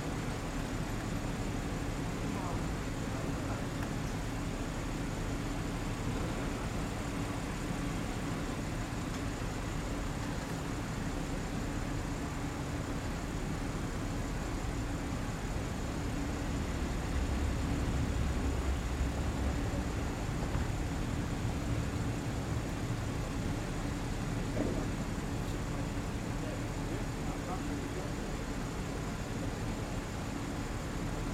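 Parked cars idling with a steady low hum, the rumble swelling for a few seconds around the middle, under indistinct voices of people standing nearby.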